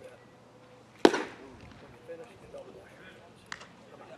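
A pitched baseball smacking into the catcher's mitt about a second in: one loud, sharp pop with a short ring-off. A smaller click follows near the end, with faint voices around it.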